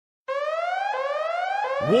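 Electronic alarm tone of a phone ringtone: a rising siren-like sweep repeated about every 0.7 seconds, starting about a quarter second in.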